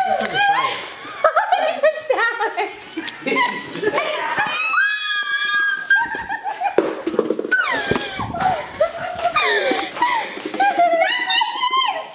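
Several people laughing, shrieking and shouting excitedly, with no clear words. A long, high-pitched scream comes about five seconds in, and another rising scream comes near the end.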